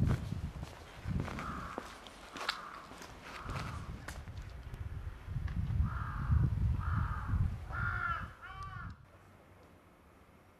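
A bird calling several times in short separate calls, the last ones coming closer together, over a low rumbling noise; the sound drops away about nine seconds in.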